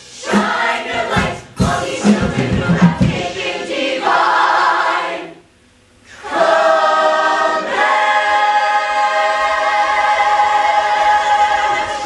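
A stage-musical ensemble singing together as a choir. For the first few seconds it sings short, punched notes, then holds a chord. After a brief break about five and a half seconds in, it sustains one long held chord that fades near the end.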